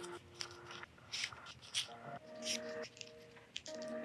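Faint, brief paper rustles and crinkles, several of them, as the backing paper is picked at and peeled from an adhesive sanding sheet on a foam sanding block.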